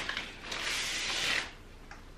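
Brown paper bag rustling and crinkling for about a second as a glass bottle is pulled out of it.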